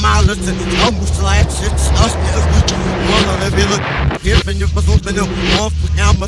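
Hip hop track played in reverse: backwards rapped vocals over a deep, steady bass line, which drops out briefly about four seconds in.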